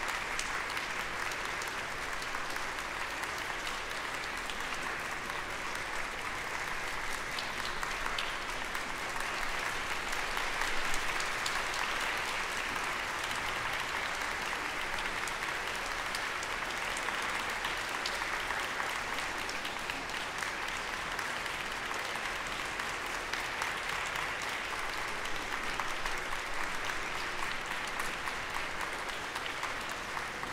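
Audience applauding steadily, with a brief swell about eleven seconds in.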